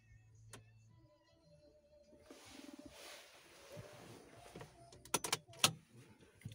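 Rustling handling noise in a car cabin, then a quick cluster of four or five sharp clicks near the end.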